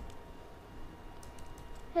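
A few light keystrokes on a computer keyboard, mostly in the second half.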